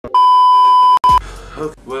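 A TV test-pattern beep, the steady high tone played with colour bars, held for just under a second. It breaks off and sounds once more very briefly.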